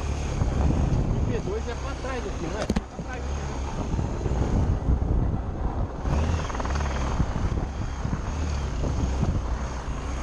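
Trail motorcycle engine running as the bike rides over a rough, grassy track, with a brief drop about three seconds in.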